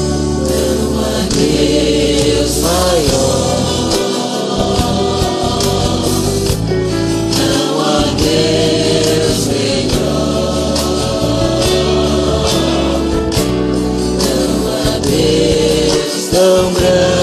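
A man singing a Portuguese-language gospel song along with a karaoke backing track, holding long notes with slides in pitch.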